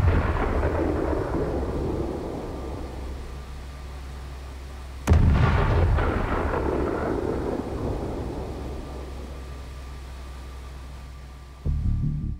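Two deep, sudden booms, the second about five seconds in, each rolling away slowly over several seconds above a low steady drone: a cinematic boom sound effect like distant artillery or thunder. Near the end a pulsing electronic music track begins.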